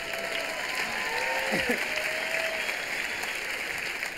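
Theatre audience laughing and clapping: a steady wash of applause with individual voices laughing through it.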